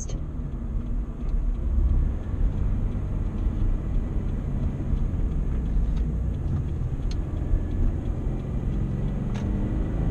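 Car engine and road noise heard from inside the cabin while driving: a steady low rumble.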